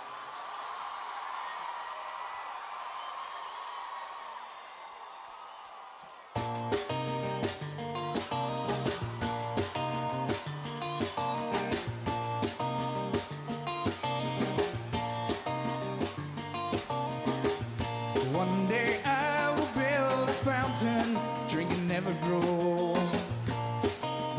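Audience noise from the arena, then about six seconds in a live pop-rock band starts a song all at once: electric bass and drums keeping a steady beat under guitar and keyboards. A male lead vocal comes in near the end.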